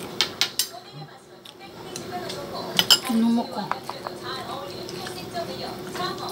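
Metal fork clinking against a ceramic soup bowl and plate while seaweed is fished out of soup, with a few sharp clinks near the start and again about three seconds in. A short closed-mouth hum comes just after the second clinks.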